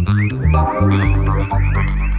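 Psybient/psydub downtempo electronic music: a deep bass line stepping between held notes under a quick run of short rising-and-falling chirping blips.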